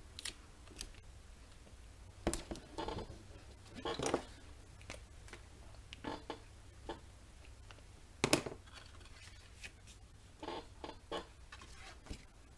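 Quiet handling of black cardstock album pages and small magnets on a cutting mat, with a pen marking the card: scattered light taps, clicks and paper rustles. The sharpest click comes about eight seconds in.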